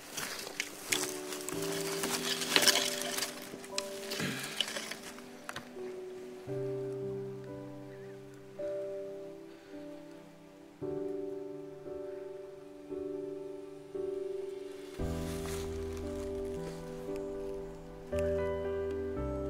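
Background music of held, steady notes that change every second or two, with a deeper bass line coming in near the end. Over the first five seconds or so, rustling and handling noise in grass and brush.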